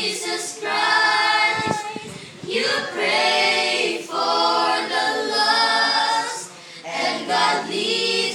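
A group of children singing a gospel song together unaccompanied, in long held phrases with brief pauses between them.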